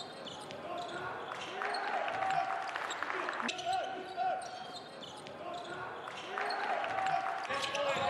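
Live basketball court sound: a ball bouncing on the hardwood floor, sneakers squeaking in short chirps, and scattered players' voices.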